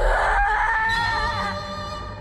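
A woman's long scream from the film soundtrack. It rises sharply at the start, holds for about a second and a half, then trails off under music.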